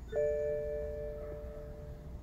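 An electronic chime sounds once: two steady tones at once, fading away over about a second and a half.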